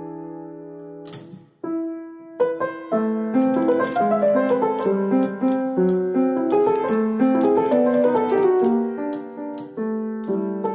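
An old upright piano, only roughly tuned, being played: a held chord dies away, there is a short gap about a second and a half in, then a few single notes and, from about three seconds in, a flowing melody over an accompaniment. Sharp clicks come with many of the notes: the wooden action parts knocking because moths have eaten the soft felts of the mechanism.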